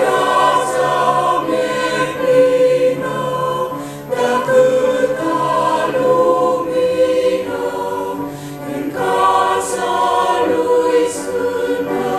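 A choir singing a Christian religious song in long held chords, with short breaks between phrases about four and nine seconds in.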